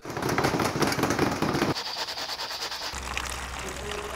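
Crinkling and rubbing of plastic as a clear plastic bottle wrapped in a plastic sheet is handled. It stops abruptly under two seconds in, giving way to a quieter hiss with a low steady hum.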